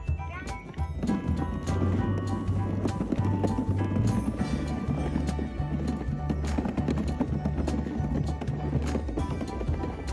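A Russian pop song with singing and a steady bass line plays throughout. Under it are a rolling rumble and irregular clacking from a kick scooter's small wheels running over the planks of a wooden boardwalk, starting about a second in.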